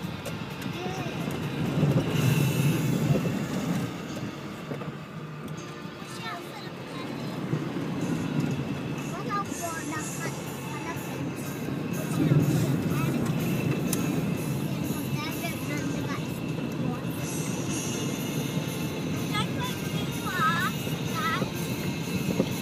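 Four-wheel-drive vehicle driving through shallow floodwater on a causeway, heard from inside the cab: a steady low rumble of engine and water washing under the vehicle, swelling louder about two seconds in and again about twelve seconds in.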